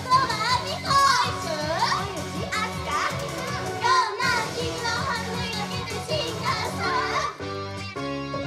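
Young women singing a J-pop idol song live into microphones over a loud backing track played through a PA. About seven seconds in, the singing stops and the backing track carries on with plain keyboard notes.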